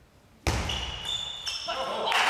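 A sudden loud shout about half a second in, then raised, cheering voices as a table tennis point ends, with a hall echo.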